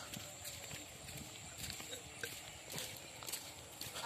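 Footsteps walking along a gravel road, a soft crunch at walking pace.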